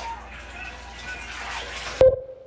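Bathwater sloshing and splashing in a bathtub as a baby is washed, over a steady low hum.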